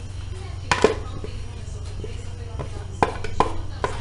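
A plastic blender jug and a wooden spoon knocking and tapping against a plastic mold as thick soap batter is poured and scraped out. There is one sharp knock a little under a second in and a quicker run of three taps near the end, over a steady low electrical hum.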